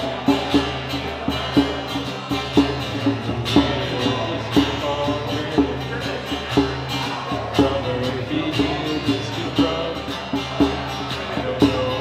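Live acoustic guitar strummed with a djembe played by hand, the drum accenting a steady beat about once a second with lighter strokes between.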